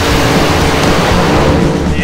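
Nitro-burning front-engine Top Fuel dragster running at full throttle on the strip, a loud, harsh rasp that cuts in sharply and eases slightly toward the end, over background rock music.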